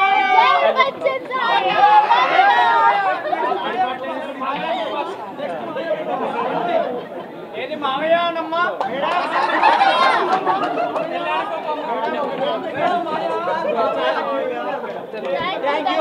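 Chatter of a small crowd: several voices talking over one another at once, with no single speaker standing out.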